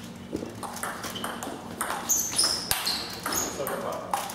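A table tennis rally: the celluloid ball clicks sharply back and forth off the rubber-faced rackets and the table top in quick succession. Brief high squeaks come in the middle of the rally.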